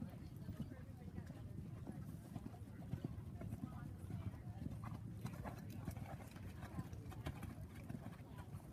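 Hoofbeats of a ridden grey horse on the sand footing of a dressage arena: a continuing run of short hoof strikes as the horse comes toward and past the microphone.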